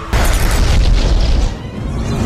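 A loud film explosion boom that hits suddenly just after the start, deep and rumbling, and dies down about a second and a half later, under dramatic trailer music.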